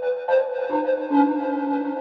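Toxic Biohazard synthesizer (FL Studio plugin) playing a sound from its SFX preset category, which sounds like a synthetic flute. It plays a few sustained notes at different pitches that overlap, with new notes coming in about a third of a second and three-quarters of a second in.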